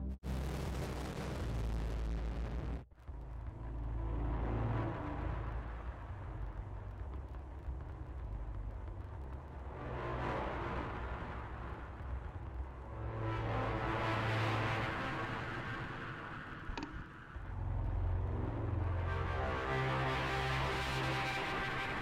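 A synthesizer saw wave played through the iZotope Trash 2 distortion plugin: a low, sustained distorted note whose noisy upper layer swells and fades several times. It cuts out briefly about three seconds in.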